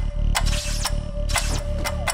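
Trailer sound effects: sharp mechanical clicks and ratcheting, irregularly spaced, over a low pulsing drone with a steady hum-like tone.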